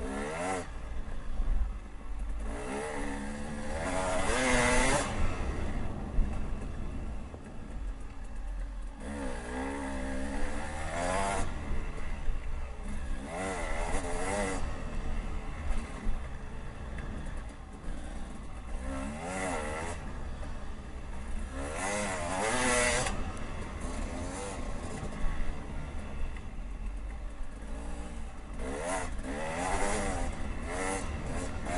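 Dirt bike engine heard from the rider's seat, its pitch climbing and falling with each twist of the throttle in repeated surges as it is ridden over a rough trail, over a steady low rumble of wind on the microphone.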